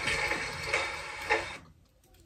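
Steady background hiss with a couple of faint clicks, cutting off abruptly about one and a half seconds in.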